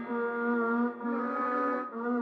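Trap beat outro: the melody's sustained notes play on their own, with the 808 bass and drums dropped out. The notes change about once a second.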